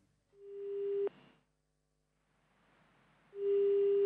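Two steady electronic tones of the same low pitch, each under a second long. The first swells in about a third of a second in, the second comes near the end, and each stops abruptly with a click.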